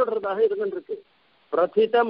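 A man speaking in a lecture-style discourse, with a pause of about half a second near the middle.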